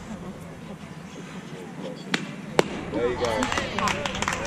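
Fastpitch softball bat striking a pitched ball: two sharp cracks about half a second apart, the second the louder. Players and spectators start shouting right after.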